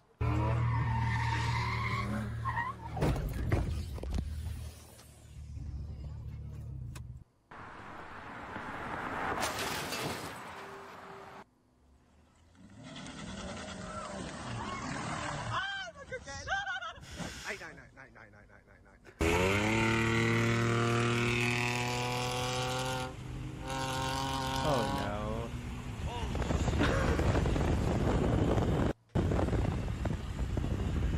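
Soundtrack of several short car clips cut one after another: car engine and road noise with voices. Near the middle an engine revs up and holds its pitch for several seconds.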